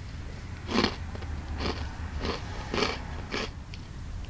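A person chewing a light, super crispy lemon cookie: about five crunches spaced roughly half a second to a second apart.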